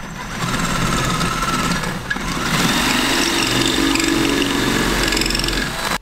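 Cordless drill running, boring into dry reef rock with a masonry bit; its tone shifts about halfway through.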